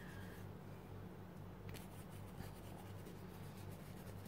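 Faint scratching of a paintbrush working acrylic paint over a crinkled tissue-paper surface, with a low steady hum underneath.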